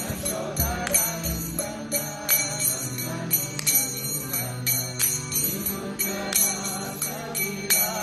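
Devotional kirtan: a voice singing a chant, accompanied by hand cymbals (karatals) struck in a repeating three-stroke pattern over a steady low drone.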